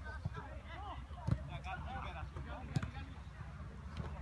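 A football being kicked twice: two sharp thuds about a second and a half apart, amid players' distant shouts and calls.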